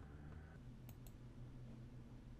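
Two quick computer mouse clicks about a second in, over a faint steady low hum.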